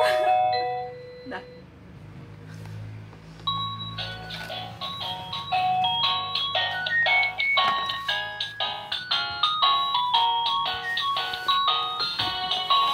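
Electronic baby toy playing a tinkly melody of short beeping notes. The tune fades out just after the start, and after a lull a quick tune begins about three and a half seconds in and carries on.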